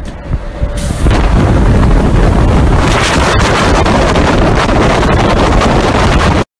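Loud, steady rush of rumbling noise on a phone's microphone, swelling up about a second in.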